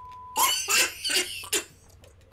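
A steady, high censor bleep that cuts off less than half a second in, followed by about a second of short, breathy bursts of a man laughing.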